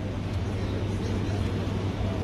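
Steady low hum with an even hiss of room noise, the background of a large airport lounge with its ventilation running.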